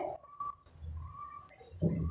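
High-pitched jingling, starting about half a second in.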